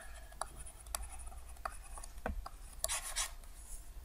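Stylus writing on a tablet: faint scratches and light taps of the nib as a word is written and underlined.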